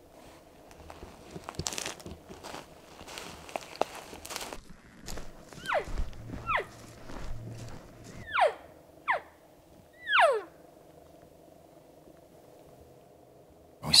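Footsteps and rustling through forest litter, then five short nasal mews from a cow elk call, each sliding steeply down in pitch, blown in two groups: locating calls meant to get elk to answer.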